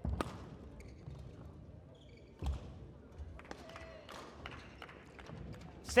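Badminton rally: racket strikes on the shuttlecock and players' footfalls on the court, with short shoe squeaks. Two sharp impacts stand out as the loudest, one just after the start and one about two and a half seconds in.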